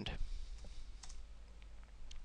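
A few faint computer mouse clicks, the clearest about a second in.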